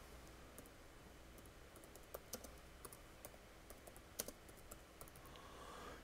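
Faint computer keyboard typing: a run of light, irregular keystroke clicks, a few of them louder.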